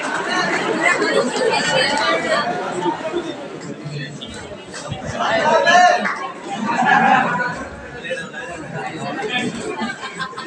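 Several men's voices talking and calling out over one another in a room, louder for a few seconds around the middle.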